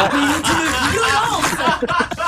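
Several people laughing at once, loud and overlapping.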